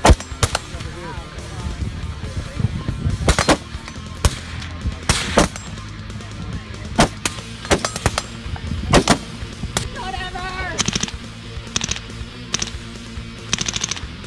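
AR-style rifle fired in single shots at uneven intervals, a dozen or so sharp reports, over background music.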